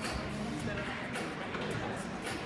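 Indistinct voices over steady room noise, with a few short knocks.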